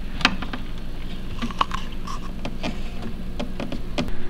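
Scattered light clicks and taps of hands handling a ribbed plastic pump hose against a coco-fiber vivarium background, over a steady low hum.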